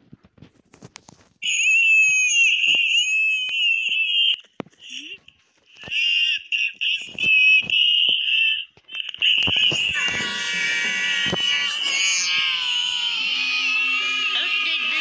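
Sped-up cartoon soundtrack: a very high-pitched, wavering crying voice starts about a second and a half in and breaks off twice. From about ten seconds in, several other overlapping voices and sounds layer over it.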